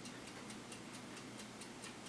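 Faint, steady, rapid ticking of a small clock, several ticks a second.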